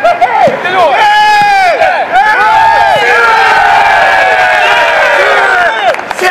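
A group of footballers shouting, cheering and laughing together, many voices overlapping, with long drawn-out calls in the second half. It is the squad's reaction as a rondo's pass count reaches fifteen.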